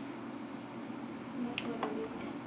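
Steady low room hum with two small sharp clicks in quick succession about one and a half seconds in.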